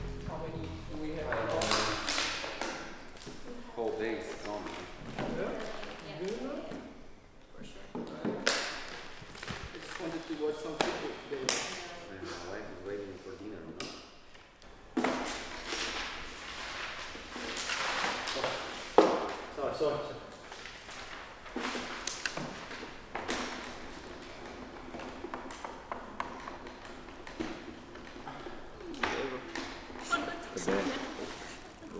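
Quiet, indistinct talk with scattered taps and knocks.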